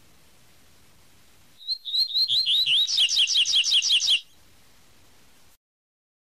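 Double-collared seedeater (coleiro) singing its 'tui tui' song. Starting about a second and a half in, a phrase of repeated whistled notes lasts about two and a half seconds: a few spaced notes speed up into a fast run of about eight notes a second, then stop abruptly.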